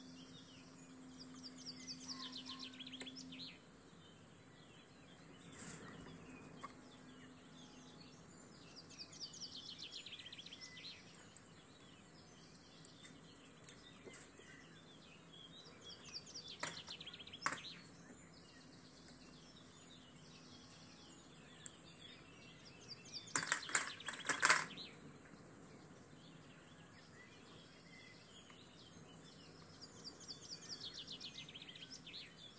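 Faint birdsong: a small songbird repeating a short, quick descending trill every several seconds. A brief cluster of sharp clicks comes about two-thirds of the way through.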